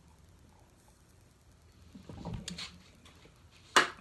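Quiet sounds of a man drinking beer from a glass, a low rough sound about halfway through, then one sharp knock near the end.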